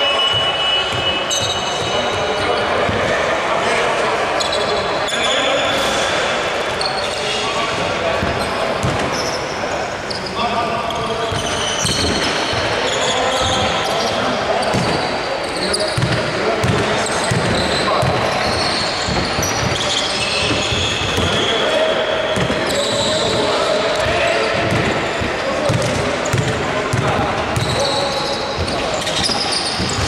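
Basketball bouncing on a hardwood court, with players' voices, in a large, echoing hall.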